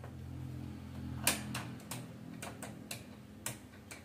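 Plastic parts of an opened Canon G3020 inkjet printer being handled and pressed into place: a run of sharp plastic clicks and knocks, irregularly spaced, starting about a second in. A low steady hum sits under the first half.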